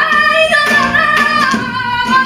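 A woman singing flamenco cante to acoustic flamenco guitar accompaniment. Her voice enters at the start with a rising glide and holds long, ornamented notes over guitar strokes about every half second.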